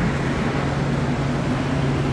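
Steady rumbling noise of an underground metro station with a constant low hum, level and unchanging throughout.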